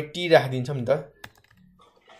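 A man speaking through the first half, then computer keyboard keystrokes: one sharp key click a little over a second in, followed by a few faint taps.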